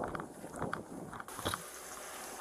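Irregular light clicks and knocks, a few a second, from a body-worn camera's wearer walking: footsteps and gear on the duty belt, over a steady hiss that gets brighter about halfway through.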